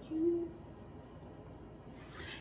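A woman's brief hum on one low, steady note, under half a second long, near the start.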